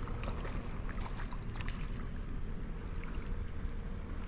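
A small hooked warmouth being brought in, making light splashes and ticks at the water's surface over a steady low rumble.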